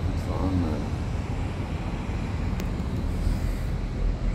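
Steady low rumble with a hiss over it, with a few words spoken in the first second and a single click about two and a half seconds in.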